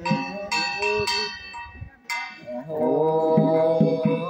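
A bell is struck several times in the first half, each stroke ringing and fading. About two and a half seconds in, a man begins a long, wavering chanted song line.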